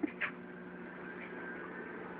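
Steady low hum of a running aquarium pump, with one short burst of noise about a quarter-second in and a faint high whine coming in about halfway.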